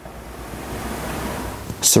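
A steady rushing hiss with no pitch or rhythm, slowly growing louder, and a man's voice starting at the very end.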